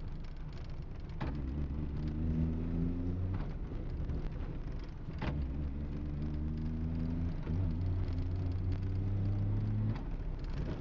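DKW 3=6's three-cylinder two-stroke engine heard from inside the cabin, pulling with revs climbing slowly, easing off a little past three seconds in and picking up again about five seconds in, with a short click at each change. Steady road noise runs beneath.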